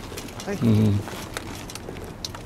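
A man's short, loud, level-pitched call of "hey" about half a second in, followed by a few faint ticks.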